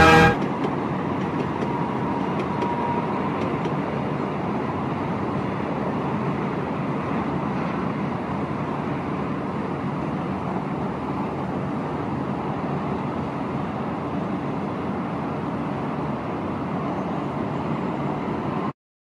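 Steady city traffic noise, with a faint horn sounding briefly about two seconds in.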